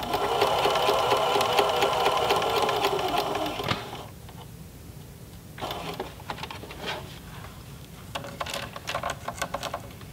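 Electric domestic sewing machine running a straight stitch through denim in one steady run of about four seconds, then stopping abruptly. Softer clicks and rustles follow.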